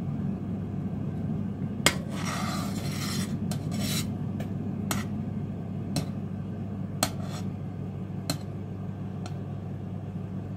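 A metal slotted spoon stirs rennet into milk in a stainless steel saucepan. It clinks against the side of the pan about once a second and scrapes along it now and then, over a steady low hum.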